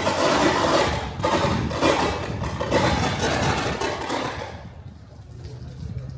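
Stadium public-address loudspeakers sounding, a loud, blurred wash of amplified sound that fades away after about four and a half seconds.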